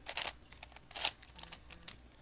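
Plastic layers of a V-Cube 7x7x7 puzzle being turned by hand, giving a few short clicks and scrapes, the sharpest about a second in.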